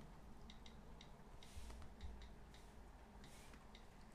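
Near silence: low room hum with a few faint, irregularly spaced light clicks and soft puffs of hiss.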